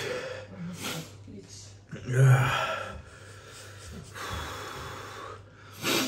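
A man breathing hard and raggedly from the burn of a chip made with Carolina Reaper and Trinidad Moruga Scorpion peppers. There is a short sharp breath about a second in, a loud voiced gasp about two seconds in, a long drawn breath after the middle, and another quick breath at the end.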